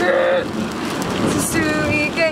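A woman singing with a few held notes, over the steady hiss of rain and road noise inside a moving car.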